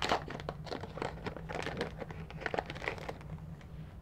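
Cellophane packaging of clear acrylic stamp sets crinkling and rustling in the hands as it is handled, a string of irregular crackles.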